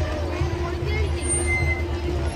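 A vehicle engine running at low parade speed: a steady low rumble with an even tone above it, and crowd voices around it.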